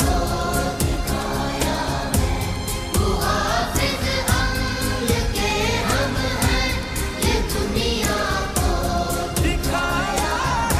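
A song sung in Urdu over a backing track with a steady beat.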